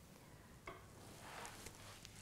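Near silence: room tone, with one faint click about two-thirds of a second in and a soft rustle building toward the end.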